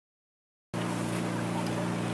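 Silence, then about two-thirds of a second in a steady low motor-like hum cuts in abruptly and holds at an even level.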